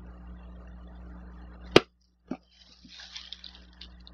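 Thin plastic shopping bag rustling and crinkling faintly as a hand rummages in it, in the second half. Before that, a sharp click, after which the background hum cuts out for about half a second.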